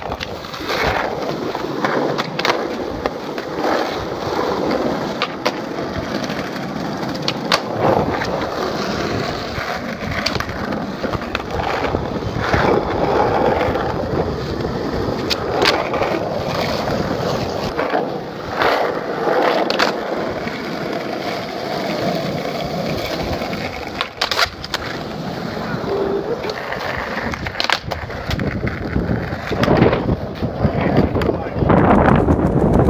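Skateboard wheels rolling over rough asphalt, a continuous gritty rumble, with scattered sharp clicks and knocks through it.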